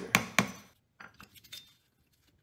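Hammer gently tapping a flathead screwdriver against a wheel speed sensor in a rear wheel hub, metal clinking on metal: two sharp taps at the start, then a few fainter ones. The taps are driving the old, open-circuit sensor out of the hub.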